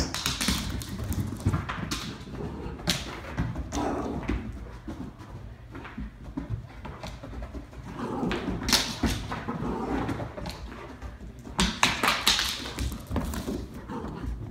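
A golden retriever puppy and a Great Pyrenees/lab mix romping in play: scuffling, with claws and paws tapping and thudding on the floor, in busier spells about 9 and 12 seconds in.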